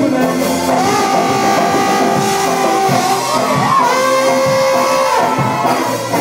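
Live ska band playing an instrumental stretch between vocal lines: saxophone and trombone hold long notes over keyboard, guitar, bass and drums, with one horn line bending in pitch about halfway through.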